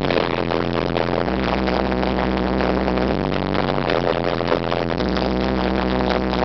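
Electronic dance music from a DJ's live mix, with a sustained bass line that shifts pitch every couple of seconds under a dense synth layer.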